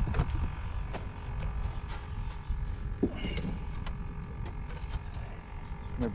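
Steady low rumble of wind on the microphone in the open air, with a few faint light knocks and a brief faint sound about three seconds in.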